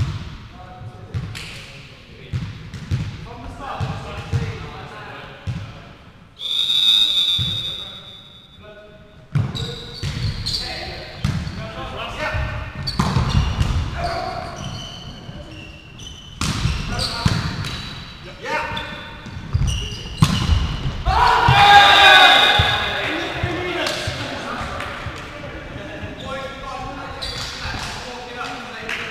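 Volleyball play echoing in a sports hall: ball hits and footfalls, with players calling out. A referee's whistle blows once for about a second, around seven seconds in. Loud shouting a little past three-quarters of the way through.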